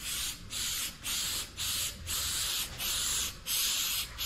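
Aerosol can of Flex Seal liquid rubber spraying onto a tire sidewall in a quick series of short hissing bursts, about two a second.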